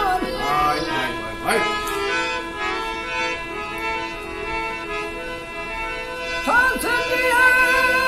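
Harmonium playing a steady reedy melody between sung lines of a Gujarati devotional bhajan. An old man's singing voice comes back in over the harmonium about six and a half seconds in.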